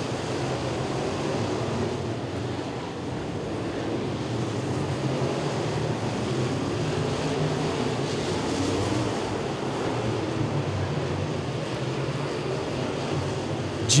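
Dirt-track open wheel modified race cars running laps, their engines making a steady, blended drone.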